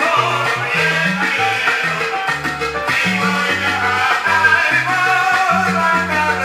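Salsa record playing on a turntable from a 45 rpm vinyl single. The band plays over a bass line that steps from note to note.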